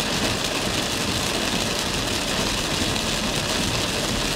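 Heavy rain hitting a car's roof and windshield, heard from inside the cabin as a steady hiss, with a low engine and road rumble underneath.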